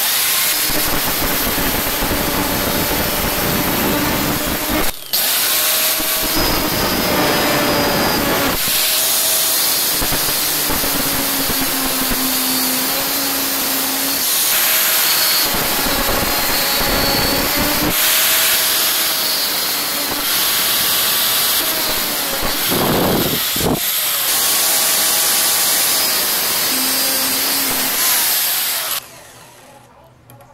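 Angle grinder with a thin cutting disc cutting a notch into a car alternator's aluminium rear end housing. Its motor pitch sags and recovers as the disc bites, with a brief break about five seconds in, and it stops about a second before the end.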